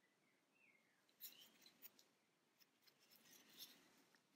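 Near silence, with faint soft rustles and small clicks from about a second in: a yarn needle and yarn being drawn through crocheted fabric and the piece handled.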